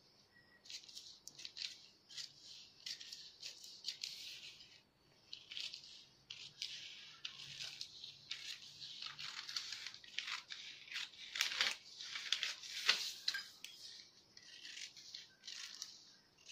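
Scissors cutting through newspaper along a curved line: a run of crisp snips with the rustle of the paper, pausing briefly about five seconds in.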